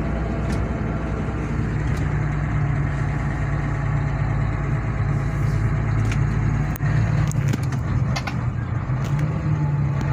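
Steady engine hum and road noise heard from inside the cab of a vehicle driving along a mountain road, with a few light clicks in the second half.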